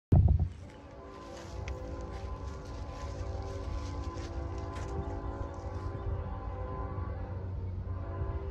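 Distant freight train's diesel locomotives running, a steady hum with several held tones. There is a brief loud thump at the very start.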